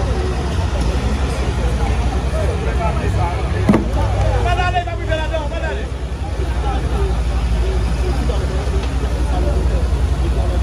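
Heavy diesel engine of a tracked excavator running steadily with a low, even rumble, under a crowd of voices talking and calling out. A sharp knock sounds a little over a third of the way in, and a voice calls out loudly near the middle.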